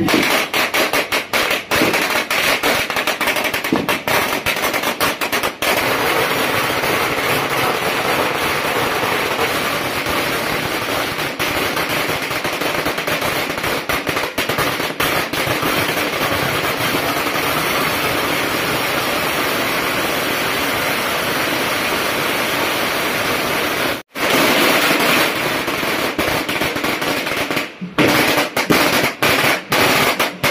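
A long string of firecrackers going off in a rapid, continuous crackle of bangs. There is a brief break about three-quarters of the way through, and near the end the bangs come more separately.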